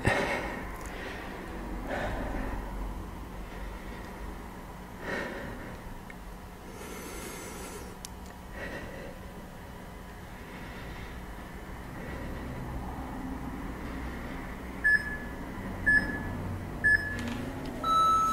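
Breathing during a plank hold, heard as soft swells of breath noise, then three short electronic beeps about a second apart near the end: a workout interval timer counting down the end of the work interval.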